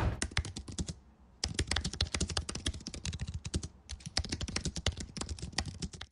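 Typing on a computer keyboard: rapid runs of key clicks, broken by two brief pauses, about a second in and again near four seconds.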